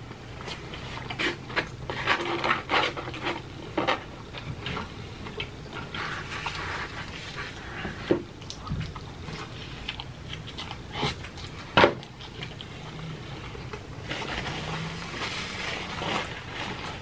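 A man chewing cheese pizza, with irregular wet mouth smacks and clicks throughout. A few sharper smacks stand out, the loudest about twelve seconds in.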